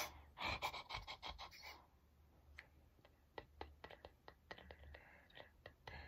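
A woman's breathy, nervous giggling muffled behind her hand for the first couple of seconds, followed by a run of faint, irregular small clicks.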